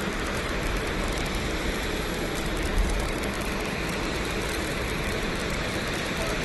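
Steady rushing noise with a low rumble underneath: the outdoor din of an airport apron beside a parked plane and motorcade.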